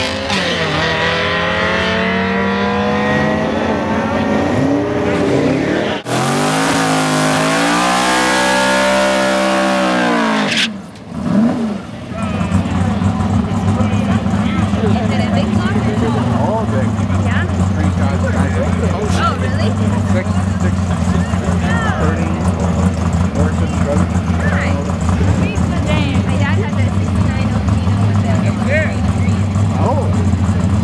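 Drag-race cars launching and accelerating hard, their engine revs climbing and dropping as they shift gears, in two short runs. Then a long burnout: an engine held at steady high revs while the drive tyres spin and smoke on the pavement.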